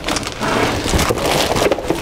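Clear plastic bag crinkling and rustling as it is pulled out of a cardboard kit box, a dense run of crackles.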